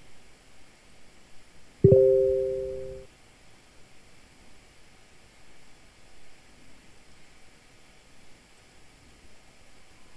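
A computer's electronic alert chime: one steady pitched tone that starts suddenly about two seconds in, fades over about a second and cuts off. Low background room noise otherwise.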